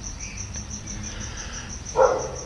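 A cricket chirping steadily, a high pulsing trill of about eight or nine pulses a second, over a low steady background rumble.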